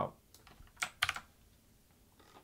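Computer keyboard keystrokes: a few faint taps, then a quick cluster of three sharp key clicks just under a second in, as a line of code is commented out.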